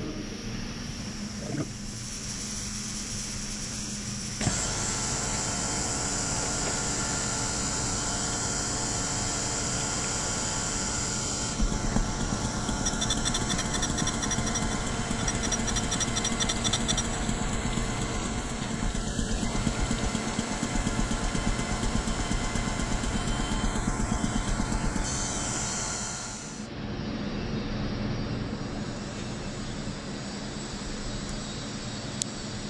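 Surface grinder running, its abrasive wheel grinding the second face of a steel V-block under coolant to bring it parallel to the first. The machine hums steadily at first; the grinding comes in louder and rougher about eleven seconds in and runs on until a sudden drop near the end, after which only a steady machine hum remains.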